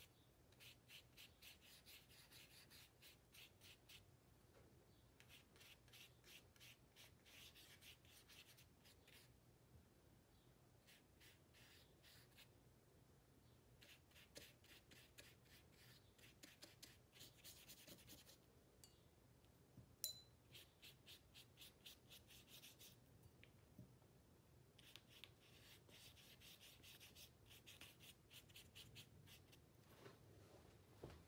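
Paintbrush stroking watercolour onto paper: faint, quick rasping strokes in runs of a few seconds with short pauses between. One brief ringing clink about twenty seconds in, as the brush touches a glass jar.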